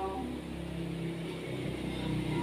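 A woman's sung note trails off just after the start. Then a low motor hum, like a passing vehicle engine, grows steadily louder.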